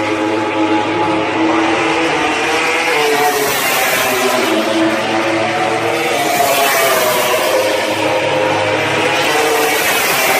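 Racing motorcycle engines running on the circuit, several at once, their engine notes rising and falling as the bikes pass and change speed.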